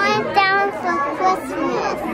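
A young girl talking in a high-pitched voice.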